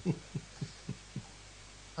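Soft chuckling: about five short, quiet pulses of laughter roughly a third of a second apart, fading out after just over a second, over a faint steady hum.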